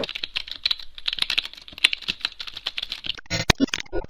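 Typing on a computer keyboard: a quick, irregular run of key clicks, with a denser clatter near the end.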